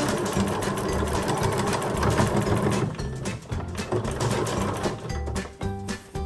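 Domestic electric sewing machine stitching a hem, running steadily at first and easing off about halfway through, over background music.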